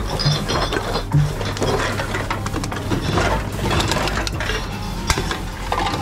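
Reverse vending machines taking in drink cans and glass bottles: the intake mechanism runs with a steady hum under frequent clicks and clatters as containers are fed in.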